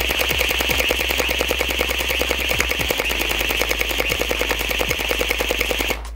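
DJI RoboMaster S1's gel-bead blaster firing in a rapid, even string of sharp shots, cutting off near the end.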